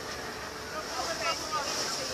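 Steady noise aboard a moving boat: water rushing past the hull and wind on the microphone, with faint passengers' voices about a second in.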